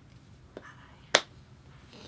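Two sharp finger snaps about half a second apart, the second much louder.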